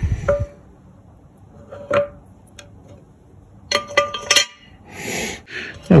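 Small metal parts clicking and clinking against the metal housing of an outboard remote control box as its shift gears are fitted by hand: a few separate clicks, then a quick cluster of clinks about four seconds in.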